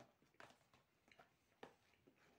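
Near silence with a few faint, scattered clicks from a plastic takeaway food tray being handled as a piece of cake is picked out of it.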